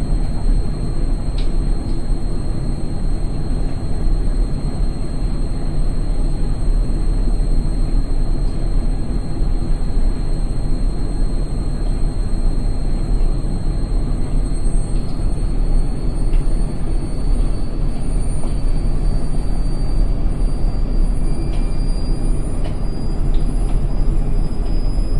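Indesit front-loading washing machine spinning after the first rinse: the drum turns at speed with a steady deep rumble. A thin high motor whine rises slowly in pitch from about halfway through as the spin picks up speed.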